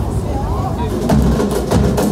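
Percussion starting about a second in: sharp, wood-block-like knocks over low drum thuds, several strikes a second, over a background of voices.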